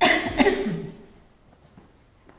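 A woman coughing twice in quick succession.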